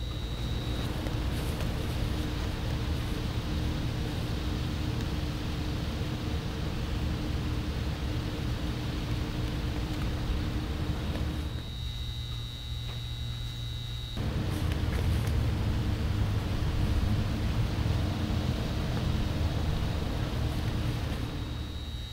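Steady hiss with a low rumble and a faint hum: the static of a broken-up live feed. About twelve seconds in it thins for a couple of seconds, leaving a thin high tone, then the rumble and hiss return.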